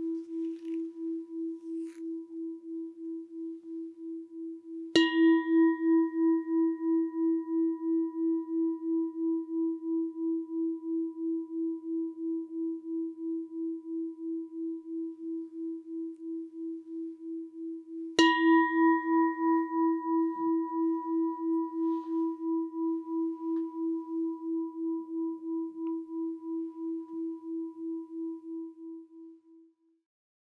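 Singing bowl struck twice, about five seconds in and again about eighteen seconds in, each strike ringing on as a low, pulsing tone that slowly dies away. A ring from an earlier strike is already sounding at the start, and the last ring fades out near the end. The bowl marks the close of the meditation.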